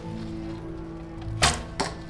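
Recurve bow shot: the string is released with one sharp snap about one and a half seconds in, followed shortly by a smaller click. Background music plays throughout.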